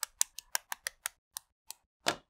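Plastic LEGO bricks clicking as they are snapped together by hand: a quick run of sharp clicks in the first second, then a few more spaced out.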